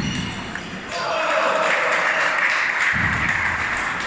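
Table tennis ball clicking off paddle and table during a rally, then from about a second in a loud, steady wash of hall noise and background voices covers it.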